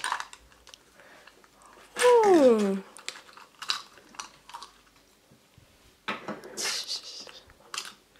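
Plastic toy capsule from a chocolate surprise egg being handled and opened: scattered light clicks of hard plastic and crinkling of folded paper, with a longer rustle near the end. About two seconds in, a short, loud pitched sound slides down.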